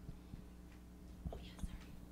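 Quiet room tone over a steady low electrical hum, with a few faint knocks and a brief faint voice about one and a half seconds in.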